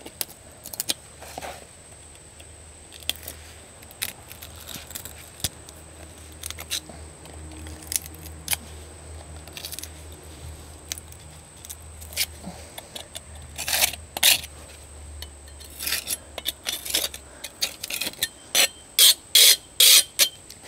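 A hand tool scraping and clicking against clay patio bricks as they are pried loose from their sand bed, the scrapes scattered at first and coming thick and loud near the end. A faint low hum runs underneath and stops shortly before the end.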